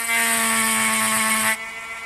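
Dremel Micro cordless rotary tool running with a steady whine while its 7103 diamond wheel point grinds into glass, making a loud high hiss. The grinding stops abruptly about a second and a half in, while the motor keeps running.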